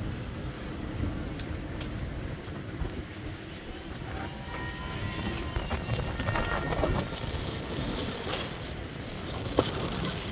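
Steady low rush of wind and water aboard a racing trimaran sailing at speed, with faint whistling tones coming and going between about four and seven seconds in.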